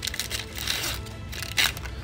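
Foil wrapper of a Magic: The Gathering Double Masters 2022 collector booster pack torn open by hand, crinkling, with one sharp rip about one and a half seconds in.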